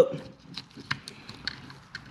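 A few light, scattered clicks and taps of plastic parts as the ASC throttle actuator housing and its new cable are handled and worked into place.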